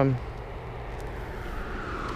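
Rumble of a passing vehicle, growing slowly louder from about a second in.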